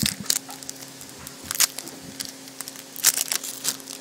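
Foil wrappers of Pokémon HeartGold SoulSilver booster packs crinkling and crackling irregularly as they are handled, over a faint steady hum.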